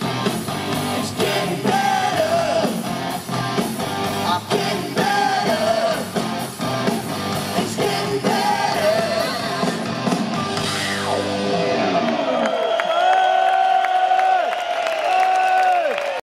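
Live hard-rock band playing, with electric guitars, drums and a sung lead vocal heard through the festival PA. About twelve seconds in the drums and bass drop out, leaving long held notes.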